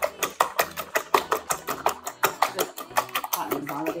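Wire balloon whisk beating eggs and sugar in a stainless steel bowl: rapid, even clicking of the wires against the metal, several strokes a second, as the sugar is whisked until it dissolves.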